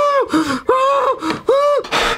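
A person's exaggerated, high-pitched labour breathing: three long voiced gasps about two-thirds of a second apart, each followed by a shorter, lower one.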